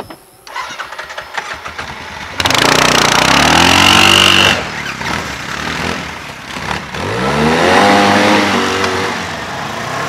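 ATV (quad bike) engine starting, then revving up with its pitch climbing as it pulls away. A second rising rev comes about seven seconds in.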